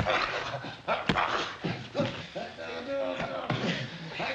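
Wrestlers straining in a hold: grunts and hard breathing, with a drawn-out strained vocal groan a little past the middle. A few sharp thumps of bodies come in the first two seconds.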